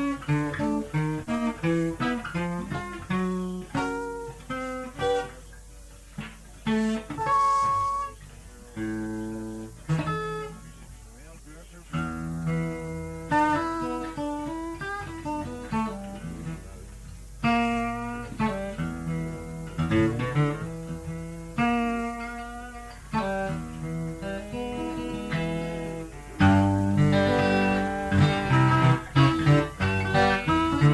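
Acoustic guitar being picked, single notes and chords ringing out one after another. The playing is softer and sparser for a few seconds early on and turns louder and busier near the end.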